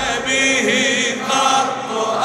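A choir of voices chanting in long, wavering notes.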